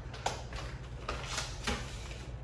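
Paper bags of coffee beans being handled and set on a floating shelf: a few light knocks and rustles over a steady low room hum.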